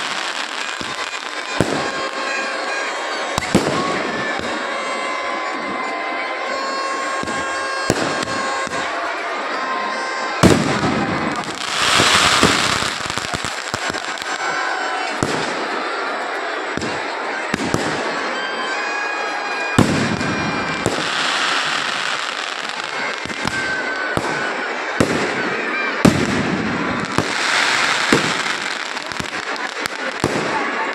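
Aerial fireworks going off over a large crowd: sharp bangs at irregular intervals and several longer bursts of crackling, over a steady bed of crowd voices.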